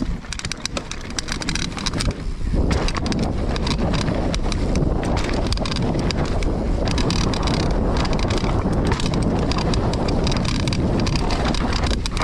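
Mountain bike riding fast down a dirt forest trail: tyres rolling over dirt with frequent rattles and knocks from the bike over bumps, and wind rushing over the microphone. It gets louder about two and a half seconds in.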